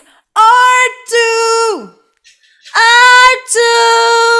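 A woman singing the phrase "or two" twice as an intonation exercise. Each time it is two held notes at nearly the same pitch, and the first time the last note drops away in a downward slide. The low note is sung with extra energy to keep it from going flat.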